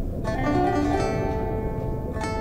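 A plucked string instrument playing a short run of separate notes that start a moment in and ring on, over a steady low rumble.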